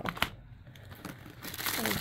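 A paper accessory envelope and its plastic-wrapped contents crinkling as they are handled, with a couple of sharp clicks just at the start and the rustling building again in the second second.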